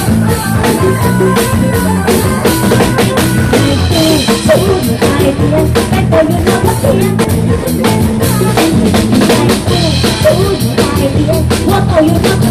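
Live band music driven by a drum kit played hard, with bass-drum and snare hits over a steady bass line.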